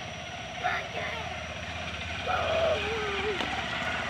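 Small motorcycle engine running as it rides up from behind, a steady hum that grows slowly louder as it draws near.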